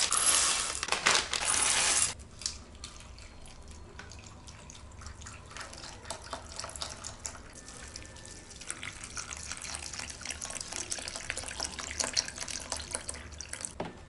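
Dry cereal flakes poured from a bag into a ceramic bowl, a loud dense rush that stops about two seconds in. Later, milk poured from a carton onto the flakes, quieter, with many small clicks.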